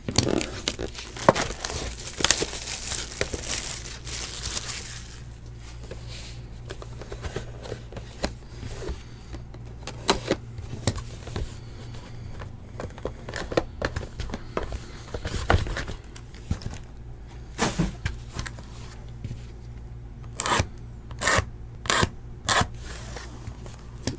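Cellophane shrink wrap being torn and crinkled off a cardboard trading-card box, loudest in the first few seconds. Then the box and foil card packs are handled, with scattered clicks and a quick run of sharp taps near the end.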